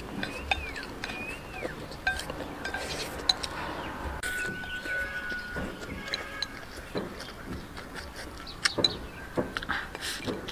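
Eating sounds: wooden chopsticks clicking and scraping against a ceramic rice bowl, with mouthfuls of rice and chicken giblets being chewed.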